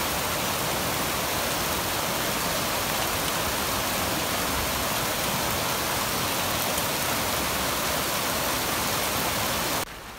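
Muddy flash-flood runoff rushing down a normally dry creek channel: a steady, even rush of turbulent water that cuts off suddenly just before the end.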